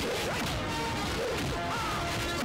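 Film fight-scene sound effects: a run of punch and smash impacts over background music.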